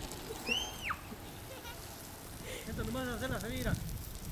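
A person's high-pitched squeal about half a second in, then a run of short laughs near the end, over the faint hiss of lawn sprinklers spraying water.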